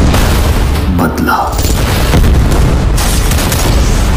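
Action-film sound effects: booming explosion blasts over a heavy, continuous low rumble, mixed with music.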